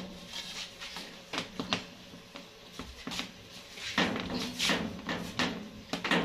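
Scattered light knocks and clatter of a round metal baking tray of dough rounds being handled at the oven, over a faint steady low hum.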